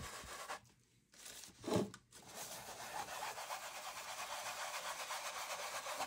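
Wad of cotton rubbed back and forth over silver leaf on a canvas, a dry rustling scrub of cotton on thin metal leaf. It breaks off briefly about a second in, with a soft bump just before two seconds, then runs steadily again.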